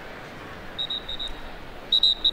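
Short, shrill whistle blasts: a quick string of four, then a louder group near the end, over a steady background hiss of stadium noise.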